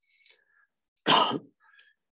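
A person clears their throat once, a short burst about a second in.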